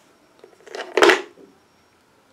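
A short rustling clatter of handling about a second in, as the bonsai scissors are put down beside the tree.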